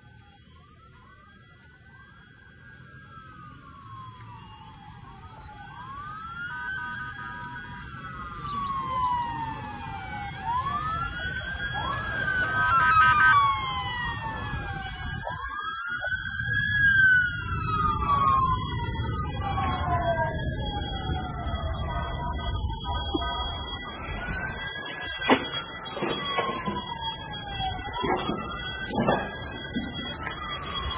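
Several emergency-vehicle sirens wailing out of step with one another, each rising and falling over a few seconds, growing steadily louder from faint. A low rumbling noise runs beneath them.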